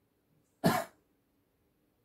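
A man coughs once, short and sharp, a little over half a second in.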